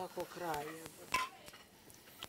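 A faint low voice, then a single light clink with a brief ring about a second in, over soft rustling.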